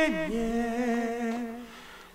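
A single voice humming a slow melody in long held notes with vibrato, stepping down to a lower note at the start and fading out near the end.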